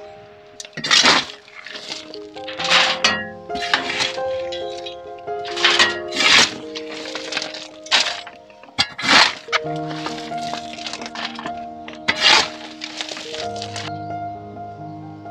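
A garden tool scraping and scooping wood chips in about nine rough, crunching strokes spaced a second or two apart, over background music.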